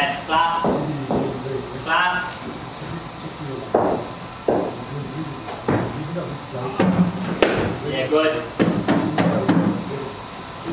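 Cricket ball knocks in an indoor net: several sharp knocks of a leather ball on bat and matting, the loudest about four seconds in and again around seven seconds. Short bursts of voices come between them.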